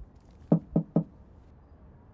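Knuckles rapping three times in quick succession on a metal security door of a flat.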